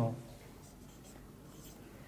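Marker pen writing on a whiteboard: a few faint, short strokes as a word is written.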